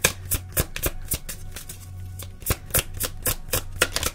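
A tarot deck being shuffled by hand: a quick run of crisp card clicks, about four a second, with a short pause midway, over soft background music.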